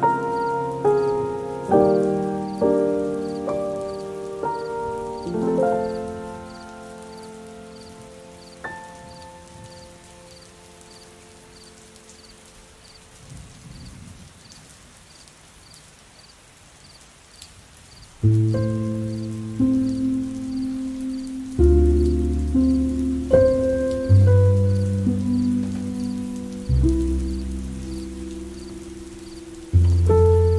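Slow, soft solo piano music, single notes and chords struck and left to ring and fade. It thins to a quiet lull with only a faint steady hiss for several seconds near the middle, then resumes with deep bass notes.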